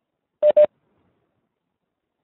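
Two quick electronic beeps of the same pitch, back to back about half a second in, from a video-conference call's notification tone.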